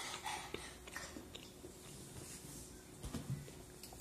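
Faint chewing and crunching of spicy corn snack chips (Takis and Hot Cheetos), a few soft crunches scattered through, more of them about three seconds in.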